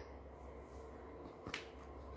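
A pause in speech: low steady hum with a single short click about one and a half seconds in.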